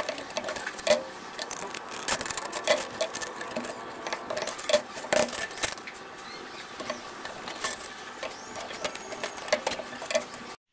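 Aviation snips cutting thin sheet metal: a run of irregular, sharp snipping clicks, several a second, with a metallic rustle between them.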